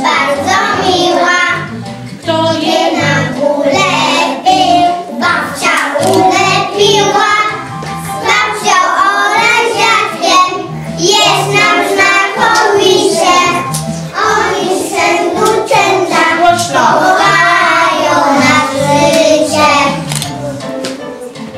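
A group of young children singing a song together over a recorded musical backing track with a steady bass beat.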